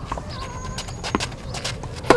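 Tennis ball being struck by rackets and bouncing on a clay court during a rally: scattered sharp knocks, the loudest about a second in, with lighter taps and shoe scuffs on the clay.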